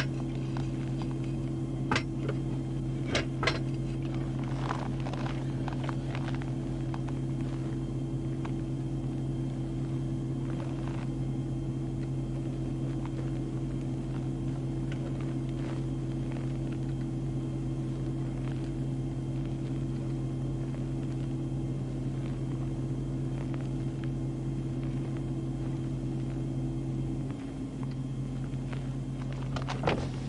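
Steady low hum of a stationary police patrol car idling, heard inside the cabin, with a few sharp clicks in the first few seconds. About 27 seconds in, part of the hum slides down in pitch and fades.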